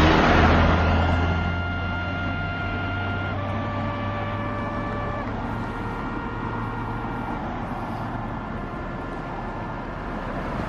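Road traffic: a lorry engine running close by at the start, fading as it moves off, then passing cars. A faint steady whine in the middle shifts in pitch twice.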